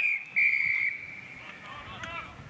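Umpire's whistle: the end of one blast, then a second, stronger steady blast of about half a second that trails off. Shouting voices come in near the end.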